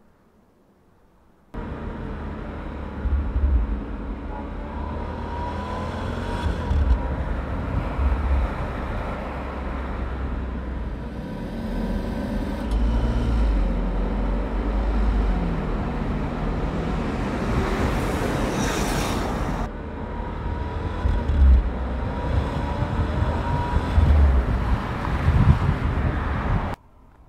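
Audi A8 saloon driving on a road: steady engine and tyre noise, starting suddenly about a second and a half in, with a brief louder rush about nineteen seconds in.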